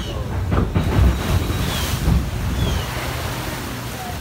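Water rushing and churning around a theme-park ride boat as it moves along the river channel, over a low rumble, with wind buffeting the microphone.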